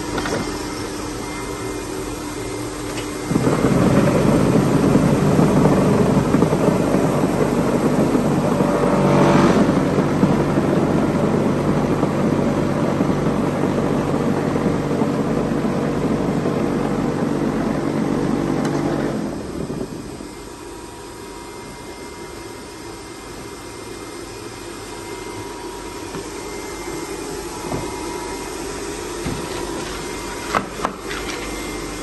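Motor drive of a Polar 115 ED paper guillotine's automatic down loader running. A loud steady mechanical hum starts a few seconds in, shifts slightly about nine seconds in, and cuts out near twenty seconds, leaving a quieter steady machine hum.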